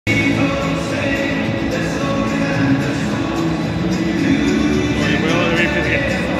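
Music with singing played over a football stadium's public-address system, a wavering sung voice coming in near the end.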